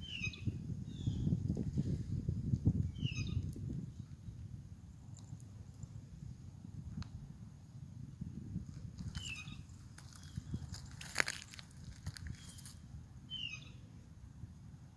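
A bird calling with short, downward-sliding chirps, repeated every few seconds, over a low rumble that is heavier in the first few seconds. One sharp click sounds about eleven seconds in.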